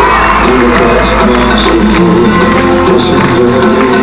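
Live Greek laïkó band music played loud through the stage PA. A low bass drops out about two seconds in.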